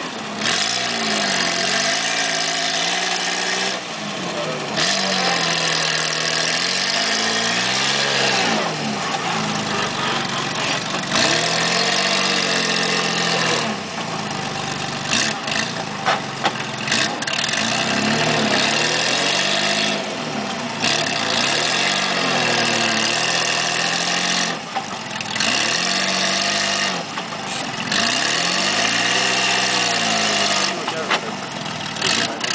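Off-road 4x4 trial buggy's engine working under load as it crawls through a deep rut, its revs rising and falling over and over every two to three seconds.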